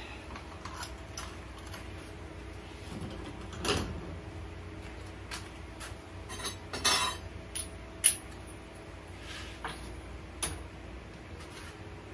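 Fired ceramic pieces clinking and knocking against each other and the kiln as they are handled and lifted out of a top-loading electric kiln. Scattered clinks, with a short rattle a little past halfway and the sharpest knock just after it.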